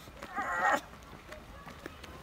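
A man's short strained groan, about half a second long, as he holds 300 lb per hand in a farmer's hold.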